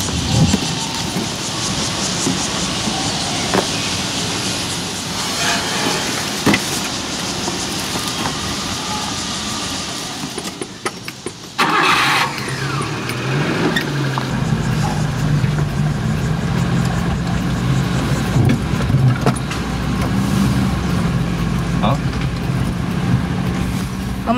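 Small pickup truck's engine cranked by its starter, catching almost at once near the middle with a quick rise in revs, then idling steadily. Before that, steady outdoor background noise.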